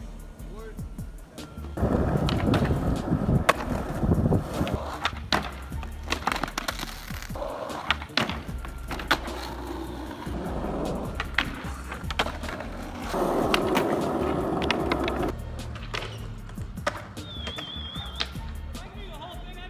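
Skateboard wheels rolling over asphalt in two loud stretches, about two seconds in and again near the middle-end, with sharp clacks of the board hitting the ground scattered throughout.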